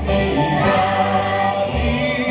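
A children's choir singing a Greek song in chorus, accompanied by bouzoukis and an acoustic guitar.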